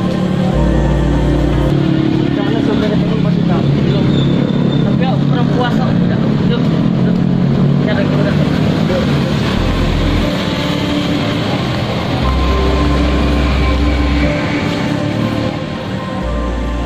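Road traffic: motor vehicles passing on a busy street, mixed with a voice and background music.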